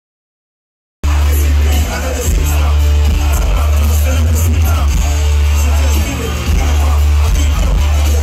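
Live hip-hop performance over a loud PA: a heavy bass-driven beat with vocals over it, cutting in abruptly about a second in after silence.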